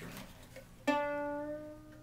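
Single newly fitted string on a kit-built ukulele plucked once about a second in, ringing and slowly dying away. The new string is not yet holding its pitch and is about to be tuned up.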